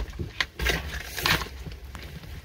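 Handling noises in a vehicle cab: a sharp click about half a second in, then rustling and knocks, over a low steady rumble.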